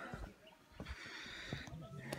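A person breathing, faintly: one breath ending just after the start and a longer breath about a second in, with a few faint low knocks.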